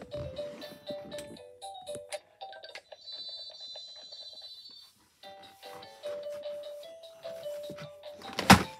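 Electronic musical toy playing a simple beeping tune of single, steady notes. About three seconds in it switches to a higher chiming jingle for a couple of seconds, breaks off briefly, then the tune resumes. Light plastic knocks come from the toy being handled.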